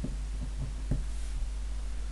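Steady low electrical hum under faint pen strokes on paper, as the word "Milk" is written, with a small tap about a second in.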